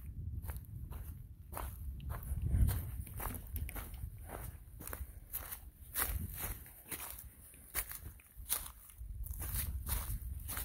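Hiking footsteps crunching through dry fallen leaves on a dirt trail, at a steady walking pace of about two steps a second.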